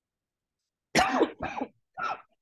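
A man clearing his throat: a sudden clear about a second in, run into a second shorter one, with another starting right at the end.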